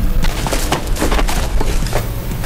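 Gunfire: many sharp shots in quick, irregular succession, about a dozen in two seconds.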